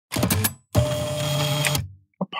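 A short opening sound effect in two parts: a brief noisy burst, then a longer noisy sound about a second long with a steady tone through it, cutting off before the talk begins.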